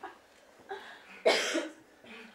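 A person coughs once, sharply, about a second and a quarter in, with a smaller vocal sound just before it.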